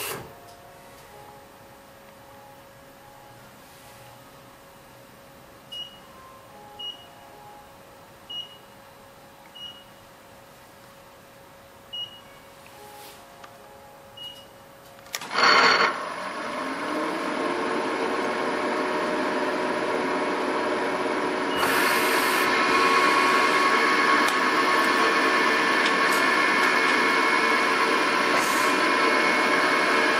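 CNC milling machine drilling the case-stud holes in an air-cooled VW engine case. The first half is quiet, with a faint steady hum and six short high beeps. Then, about halfway through, the machine starts with a sudden loud onset and runs steadily, growing louder over several seconds and stepping up again a few seconds later.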